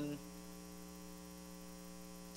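Steady electrical mains hum with overtones. The end of a drawn-out spoken word cuts off just after the start.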